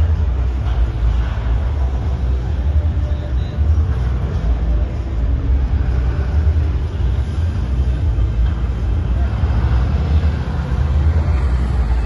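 Ram heavy-duty dually pickup running at low speed as it crawls over and down a ramp obstacle: a steady low rumble, with background chatter.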